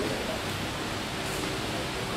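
Steady background hiss and room tone with no distinct sound event.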